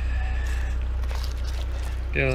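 A steady low hum with no break, and a faint thin high tone in the first half-second.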